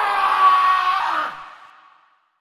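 The noise of a sudden loud blast dying away, with a wavering, drawn-out scream over it. Both fade out shortly before the end.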